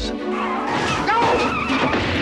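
Film soundtrack: trailer music mixed with a car skidding, its tyres squealing.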